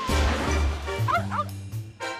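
Short TV segment jingle with a small dog's two quick yips as a sound effect about a second in.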